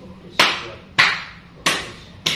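Three sharp open-hand slaps on a man's back, about 0.6 s apart, each dying away quickly.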